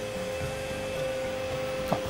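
iRobot Roomba Combo j9+ robot vacuum running as it drives over a hard floor: a steady motor hum with a constant mid-pitched whine.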